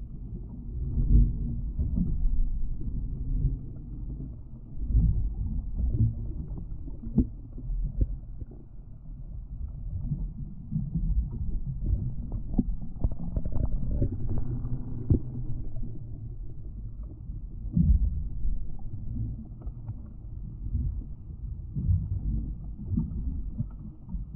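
Water sloshing and slapping against a boat's fiberglass hull, heard through an underwater camera: a muffled low rumble with irregular thumps and no high sounds.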